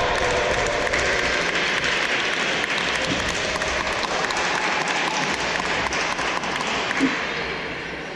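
Audience clapping steadily after a badminton rally, dying away near the end.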